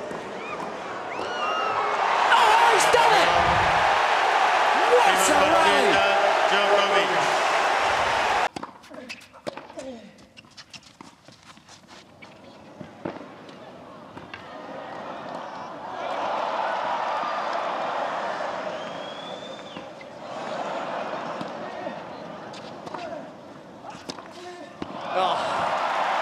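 Tennis crowd cheering loudly after a point, cut off suddenly about a third of the way in. Then a clay-court rally: tennis balls struck by rackets every second or two, with the crowd rising in swells during the rally and breaking into cheering again near the end.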